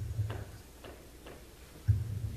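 Two dull low thumps, one right at the start and one near the end, with a few faint ticks in between.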